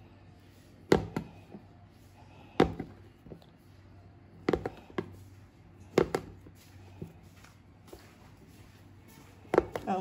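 Kitchen knife slicing through a block of sticky rice cake (tikoy) and knocking down onto a plastic cutting board, a sharp knock every second or two, about five strong strikes with lighter taps between them.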